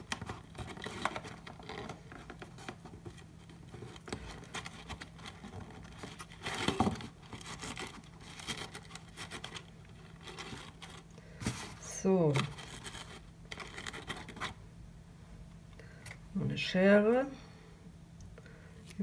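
Sheer ribbon rustling and rubbing against a card gift box as it is tied into a bow, with scratchy handling strokes throughout and a louder rustle about seven seconds in. A short vocal sound comes twice, about twelve seconds in and near the end, and scissors snip the ribbon near the end.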